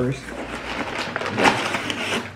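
Crumpled brown kraft packing paper rustling and crinkling as it is pulled out of a cardboard box, with one louder crackle about one and a half seconds in.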